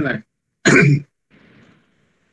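A person clears their throat once, short and loud, less than a second in, right after a few spoken words.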